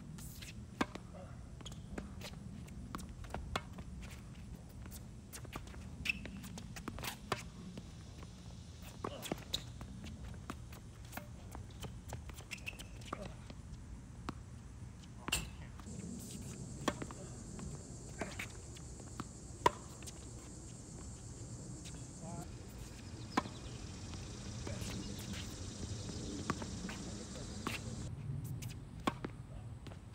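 Tennis ball struck by rackets and bouncing on a hard court: sharp single pops scattered through, a few much louder than the rest, over a steady outdoor hum. A faint high steady hiss joins in from about halfway and stops near the end.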